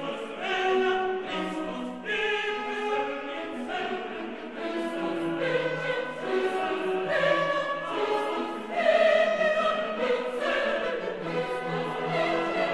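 Choral music with orchestral accompaniment, the voices holding slow, sustained notes.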